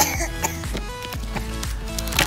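Background music, with a sharp plastic click right at the start as the latch of a clear plastic storage box is unclipped.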